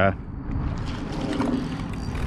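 Wind rumbling on the microphone while a hooked crappie is reeled in on a spinning rod, with a few faint clicks about a second and a half in.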